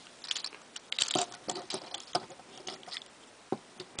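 Small plastic parts of a Transformers Generations Scoop action figure clicking and rattling as it is handled and transformed: a run of small, irregular clicks that is busiest about a second in, with a few single clicks after.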